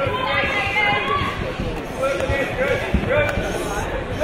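Several voices shouting at once from around the mat, over dull thuds of bare-fisted punches and kicks landing on the fighters' bodies, one heavier thud about three seconds in.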